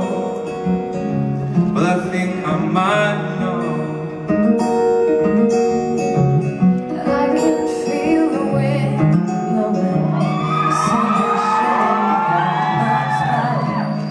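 Acoustic guitar strummed in a live performance with a sung vocal; from about ten seconds in, a voice sings a wordless, ornamented run whose pitch slides up and down.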